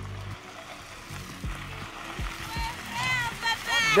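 Steady wet hiss of a car's tyres rolling slowly over wet gravel in the rain, with a few low thumps. Voices call out briefly near the end.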